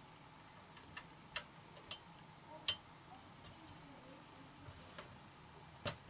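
A few light, scattered clicks of small screws and a hex key working against hard plastic model hull parts, with the sharpest click near the end.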